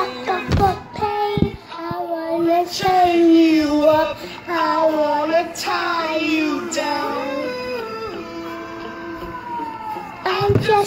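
A young girl singing a pop melody with music, her voice rising and falling, then holding one long note over the last couple of seconds.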